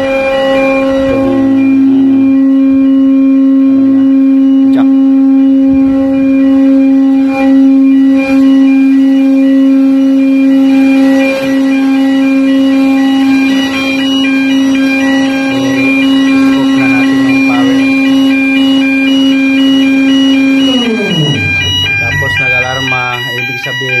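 Hatch cover hydraulic pump unit running with a steady droning whine, which winds down in pitch near the end as a repeating electronic alarm starts beeping: the hydraulic pump station's alarm for low hydraulic oil.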